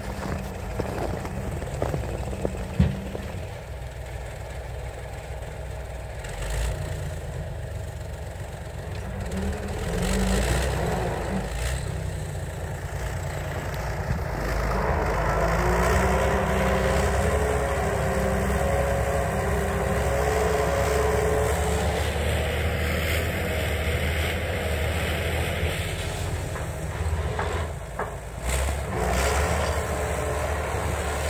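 A heavy off-road vehicle's engine running steadily under load while pulling on a tow rope. About halfway through it revs up and grows louder, and holds there, straining.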